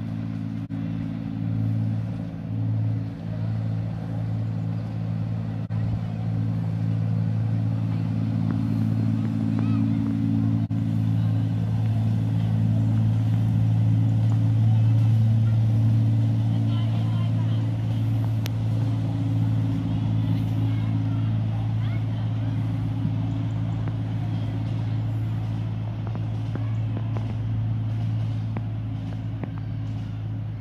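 Engine of the 10¼-inch gauge Alan Keef No. 54 'Densil' miniature railway locomotive running steadily as it hauls a train past. Its note swells to its loudest about halfway through and eases off towards the end.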